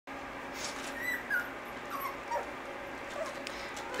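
A puppy whimpering: several short, thin, high whines, some falling in pitch.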